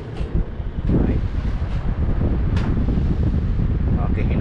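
Air blowing out of a Carrier inverter split-type air conditioner's indoor unit and striking the microphone: a loud wind rumble that rises about a second in and then holds steady. The unit is being test-run after cleaning.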